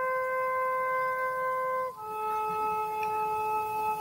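Soft meditation background music: a wind-like instrument holds one long steady note, then steps down to a lower held note about halfway through.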